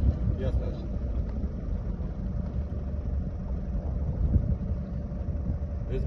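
Boat engine running slowly and steadily, a continuous low rumble with a faint steady hum above it.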